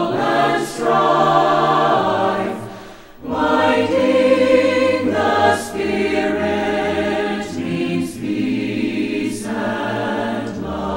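Choir singing a hymn in long held chords, with a short break between phrases about three seconds in.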